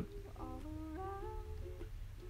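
A faint tune of held notes, stepping up in pitch twice in the first second, over a steady low hum.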